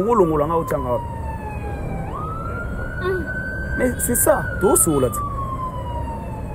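A siren wailing: one tone slides slowly down, jumps quickly back up about two seconds in, then slides slowly down again. A few brief words are spoken over it.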